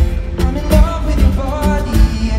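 Live pop song heard through an arena sound system from among the audience: a steady looped beat with a heavy bass pulse, acoustic guitar, and a sung vocal line over it, built up on a loop station.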